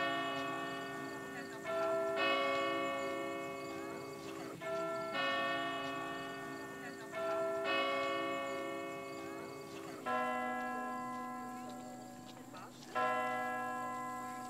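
Church bells ringing: pairs of strikes about every two and a half seconds, each ringing on and slowly fading. A deeper-toned bell takes over about ten seconds in.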